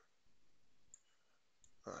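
Near silence with two faint computer mouse clicks, about a second in and again just after one and a half seconds.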